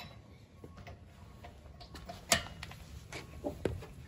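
A wrench on a car's lug nuts: scattered sharp clicks and knocks of the socket and metal as the nuts are worked loose, the loudest about halfway through.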